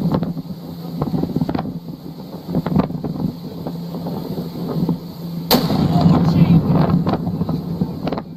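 Shock wave from the Tavurvur stratovolcano's explosive eruption reaching the boat: a sudden loud boom about five and a half seconds in, followed by sustained loud noise to the end.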